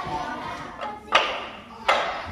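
Books clacked together as they are juggled, cigar-box style: two sharp knocks, one about a second in and one near the end.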